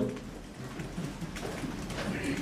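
A pause in speech: steady room hiss with faint low murmuring and a soft click about one and a half seconds in.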